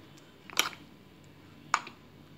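A metal spoon clicking twice against the inside of a stainless steel mixer jar while scraping out thick ground paste, the two light knocks about a second apart.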